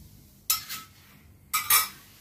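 Two brief clinks of kitchenware, one about half a second in and a slightly longer one near the end.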